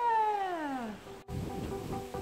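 A single long meow-like call that falls steadily in pitch and ends about a second in. After a brief cut to silence, background music with held notes begins.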